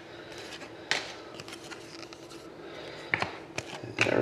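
Hockey trading cards being handled by hand: faint rustling with a few light taps and clicks as cards are shuffled and set down, one sharper tap about a second in and two more near the end.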